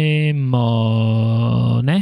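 A man's voice holding one long, drawn-out low vowel sound at a steady pitch, like a chant, sliding upward in pitch right at the end before it stops.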